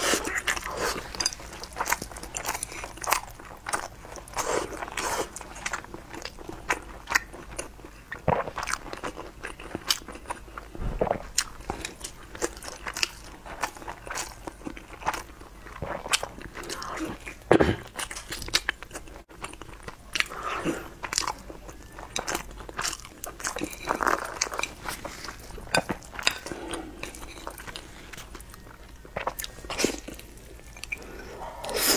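Close-up chewing of a sticky glutinous rice dumpling (zongzi): wet, sticky mouth clicks and smacks come irregularly throughout as she bites and chews.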